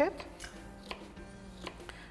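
A few light knife taps on a chopping board, unevenly spaced, over faint steady background music.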